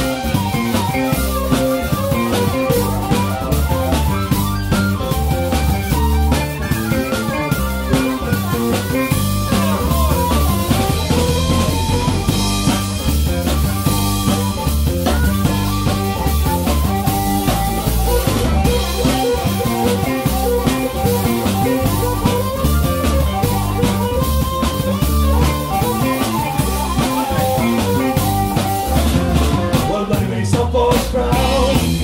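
Live funk-blues band playing an instrumental passage: drum kit, electric bass and guitar, with a harmonica played into a hand-cupped microphone taking the lead.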